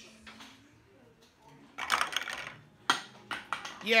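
Handling noise: a brief rustle about two seconds in, then a sharp click and several lighter clicks and knocks.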